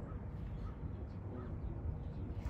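American crows cawing faintly a few times over a steady low outdoor rumble.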